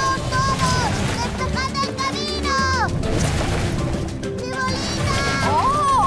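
Cartoon soundtrack: music over a continuous low rumble of a large dung ball rolling out of control, with high-pitched voices crying out.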